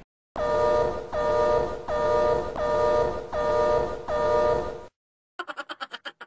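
An edited-in horn-like electronic tone pulsing about six times, each blast under a second, then stopping; near the end a quick run of short clicks.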